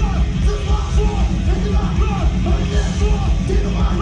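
A live heavy rock band playing loud, dense music with drums and shouted vocals.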